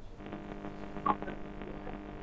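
Faint, steady electrical buzz, an even stack of held tones, on a dead phone line after the guest's call has dropped. There is a brief chirp about a second in.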